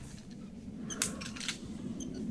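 Metal carabiners of climbing quickdraws clinking: a short cluster of sharp metallic clicks about a second in, over a low steady background rumble.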